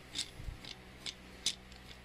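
A handful of faint, irregular light clicks of hand tools being handled, as a screw clamp is picked up.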